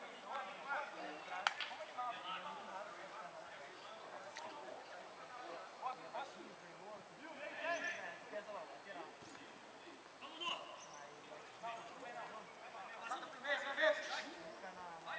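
Faint, distant voices of football players calling out during play, with a single sharp knock about a second and a half in.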